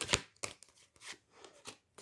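Hand-held oracle cards being shuffled, the riffling dying away right at the start, then a few soft flicks and slides as cards are handled and drawn from the deck.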